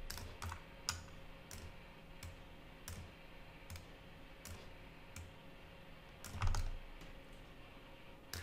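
Scattered single clicks from a computer keyboard and mouse, about one every second or less, over faint room noise, with a soft low thump about six and a half seconds in.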